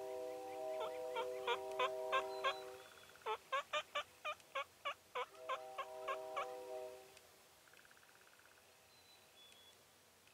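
Turkey yelping: two runs of quick yelps, about six and then about eleven, roughly three a second. Under them is a steady chord of several held tones that drops out about 3 seconds in, returns, and stops about 7 seconds in.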